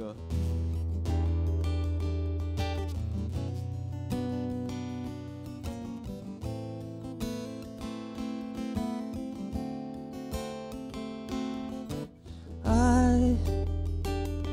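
Acoustic guitar strummed, playing chords as the introduction to a song, with a steady run of strokes throughout.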